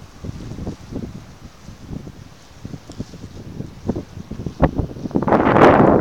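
Wind buffeting the microphone in irregular low gusts, swelling into a much louder gust near the end.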